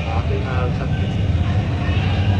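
Steady low rumble of vehicle engines and street traffic, with faint voices in the first second.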